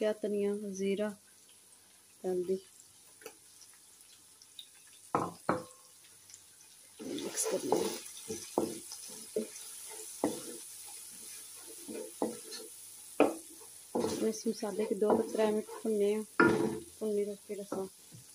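A spatula stirring spiced onion masala in a granite-coated wok, scraping and clicking against the pan with a light sizzle. There are two sharp knocks about five seconds in.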